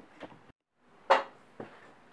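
A sharp knock about a second in, then a lighter one: hard objects being set down on a workbench.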